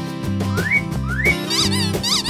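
Light cartoon background music with a bouncing bass line and repeated rising whistle-like slides. Near the end, a quick run of high chirping notes joins in.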